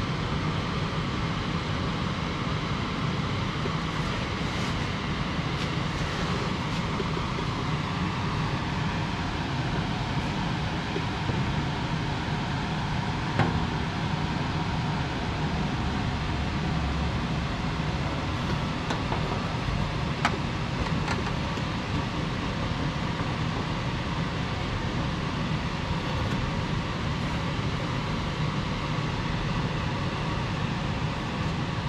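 Baileigh bead roller running steadily as a 16-gauge aluminum panel is fed through its dies to roll a joggle step. Two short sharp clicks come a little before halfway and about two-thirds of the way through.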